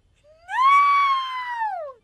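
A long, high-pitched wailing scream from a person: one sustained cry that rises in pitch as it starts, holds, and falls away at the end.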